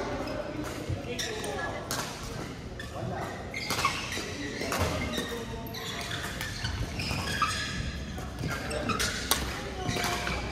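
Busy badminton hall: scattered sharp smacks of rackets hitting shuttlecocks on nearby courts, with background voices, echoing in a large hall.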